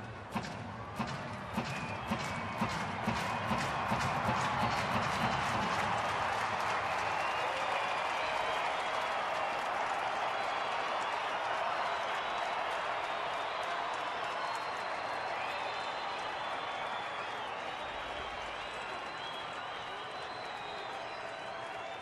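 Ballpark crowd clapping in a steady rhythm and cheering, with a few whistles. The home fans are urging the pitcher on with two strikes on the batter. The clapping fades after about six seconds into a steady crowd roar.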